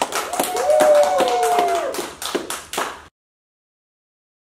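A man clapping his hands, about four to five claps a second, stopping abruptly about three seconds in. A held tone, with a second one falling in pitch, sounds over the claps for about a second and a half near the start.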